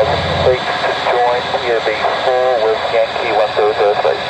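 Air traffic control radio voices, heard through the aircraft's radio with a steady hiss and clipped, narrow tone.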